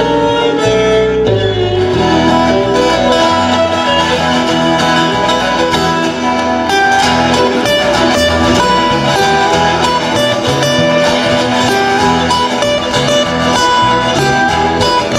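Live instrumental break in a country song: a fiddle plays a solo over strummed acoustic guitars and a walking bass line.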